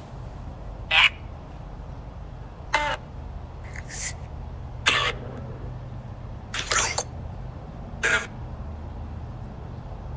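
Necrophonic ghost-box app playing through a phone's speaker: about six short, clipped voice-like fragments a second or two apart over a low steady hum.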